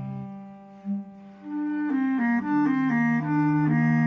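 Bass clarinet and cello improvising: after a quiet first second, the bass clarinet plays a quick run of short notes over a held low cello note.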